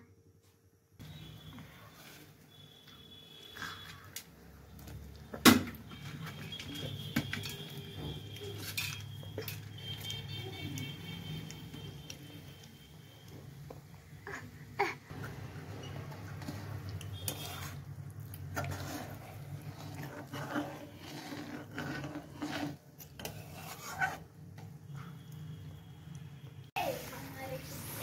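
Cooking at the stove: metal utensils clink now and then against a steel kadai of simmering kadhi, the sharpest clink about five and a half seconds in, over a steady low hum.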